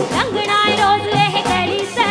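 Live Punjabi folk-pop band music with a repeating beat under a high, ornamented melody line.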